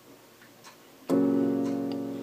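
A G-flat major chord struck once on an electronic keyboard's piano voice about a second in, then held and slowly fading.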